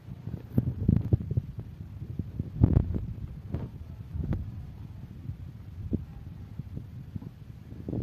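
Handling noise on a phone microphone: low thumps and rubbing with a few sharper knocks as a cat presses against and nudges the phone, loudest about a second in and again near three seconds in.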